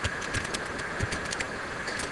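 Keystrokes on a computer keyboard: a run of light, irregular clicks over a steady background hum.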